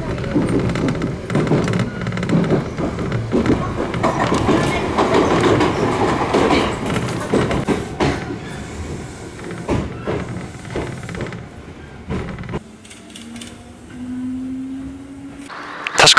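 Iyotetsu electric commuter train heard from inside the car, wheels clattering over the rail joints and the car rattling as it runs, then slowing as it draws into a station. Near the end, much quieter, a rising motor whine as a train pulls away.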